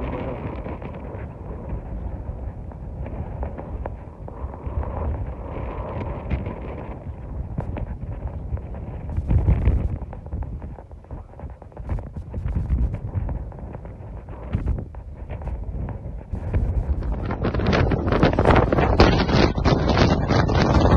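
Wind buffeting the microphone in uneven gusts, with a strong gust about halfway through and a louder, harsher stretch near the end.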